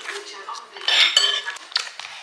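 Metal spoon clinking against a dish while eating, a few sharp clinks about a second in with a brief bright ring, and another clink near the end.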